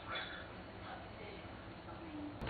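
Faint, indistinct speech in a small room, too low to make out.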